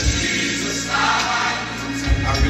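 Recorded gospel song playing through the church's sound system: a choir singing over a deep bass line, with a few low drum thumps.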